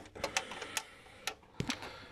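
A few irregular light clicks and knocks of hand tools and a handheld camera being handled in a car's engine bay.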